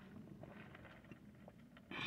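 Near silence: faint room tone inside a car while a drink is sipped quietly through a straw, with a few tiny ticks.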